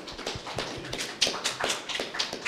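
Applause from a small audience: many quick, uneven hand claps.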